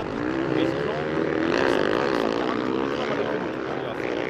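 A pack of motocross motorcycles racing past on ice, several engines revving at once, their pitches rising and falling against each other.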